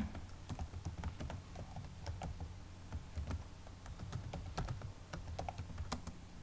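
Computer keyboard typing: a run of irregular key clicks over a faint steady low hum.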